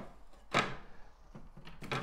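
A vehicle number plate being handled on a workbench: one sharp knock about half a second in as it is set down, then a few light clicks near the end.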